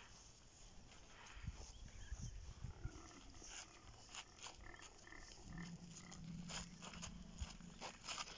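African elephant giving a low, steady rumble that starts a little past the middle and carries on to the end, over scattered soft scuffs and clicks of movement on the dirt road.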